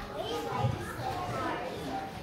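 Children's voices chattering and calling out, with indistinct speech mixed in.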